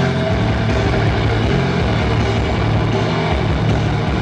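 Deathcore band playing live through amplifiers: heavily distorted, low-pitched electric guitars and bass with drums, loud and steady.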